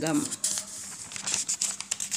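Paper notebook pages rustling as they are handled and turned, a run of small crackles and scrapes.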